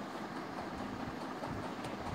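Steady low background rumble and hiss, with no distinct event.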